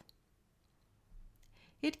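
Near silence between spoken sentences, with a few faint mouth clicks and a soft breath in before speech resumes near the end.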